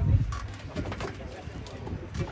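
A pigeon cooing, with people talking quietly around it.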